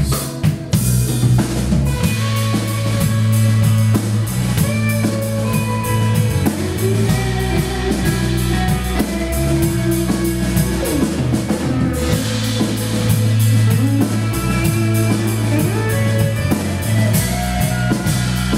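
A live rock band playing an instrumental passage: a drum kit keeping a steady beat, a bass guitar and electric guitars, with a guitar melody on top.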